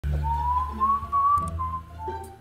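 A man whistling a tune, one long note drifting slowly upward and then breaking into shorter notes, over background music with a low bass line.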